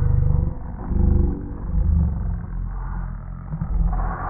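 Russian toy terrier growling, several low rattling growls in a row, in protest as its paws are pushed into a winter jumpsuit.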